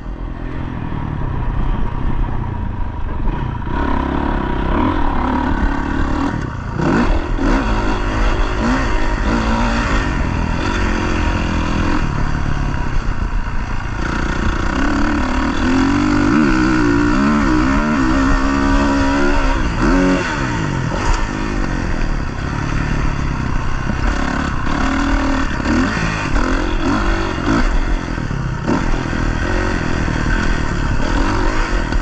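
Motocross dirt bike engine running continuously, revving up and down with the throttle as the bike is ridden, heard from a camera on the rider's vest.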